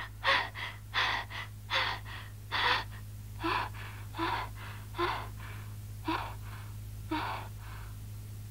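A boy panting hard after waking from a nightmare. The breaths come in quick in-and-out pairs for the first few seconds, then slow and soften as he calms down.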